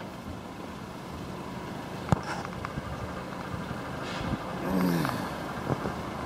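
Volkswagen Golf rear passenger door being opened: a sharp click of the latch releasing about two seconds in, then a louder stretch with a short falling creak and rustle as the door swings out, and a lighter click near the end. A steady low hum runs underneath.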